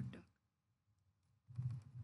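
Computer keyboard keystrokes: a brief click at the start, then a quick run of key taps about one and a half seconds in, with near silence between.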